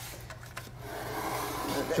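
Water from a fill hose pouring into a reef aquarium: a steady rushing hiss that swells slightly.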